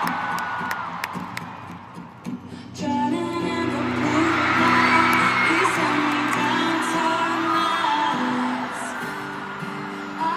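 A large arena crowd cheering and screaming, dying down over the first two seconds; then an acoustic guitar starts playing chords about three seconds in and keeps going, with the crowd still cheering over it.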